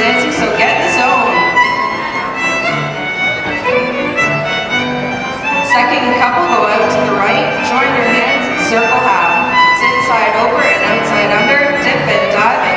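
Square dance music led by a fiddle, playing without a break.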